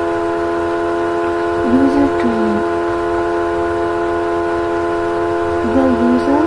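A loud, steady hum made of several constant tones held together like a chord, with a short stretch of faint voice about two seconds in.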